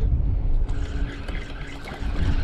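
Wind rumbling on the microphone over water splashing, as a hooked crappie is reeled in and thrashes at the surface near the boat.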